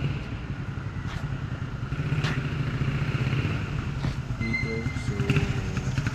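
A motorcycle engine running close by, a steady low pulsing rumble that grows a little louder, with a brief thin high tone about four and a half seconds in.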